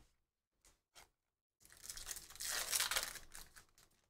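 Foil wrapper of a trading-card pack torn open and crinkled: about two seconds of rustling, crackling tearing, after a couple of faint clicks.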